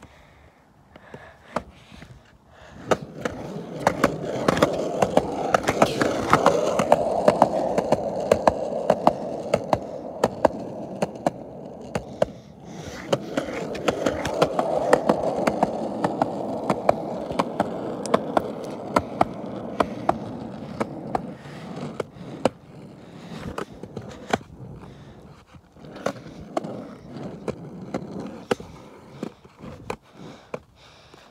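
Skateboard wheels rolling on a concrete sidewalk: a steady rumble with frequent sharp clacks as they cross the joints between slabs. The rolling starts about three seconds in and eases briefly near the middle. It drops to scattered clicks and knocks for the last several seconds.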